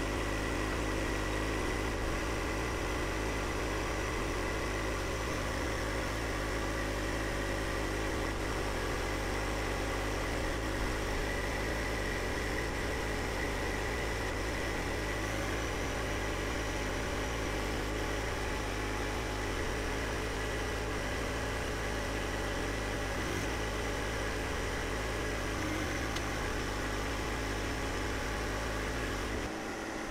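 John Deere 1025R compact tractor's three-cylinder diesel engine running steadily while it works its loader boom. The hum drops away just before the end.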